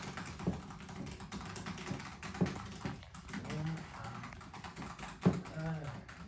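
Scattered clicks and knocks from hands working with objects inside a wooden barrel, the loudest a little past five seconds in, with short quiet voice sounds in between.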